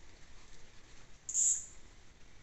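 A single short, very high-pitched chirp or squeak from a small animal, about a second and a half in, over faint forest background.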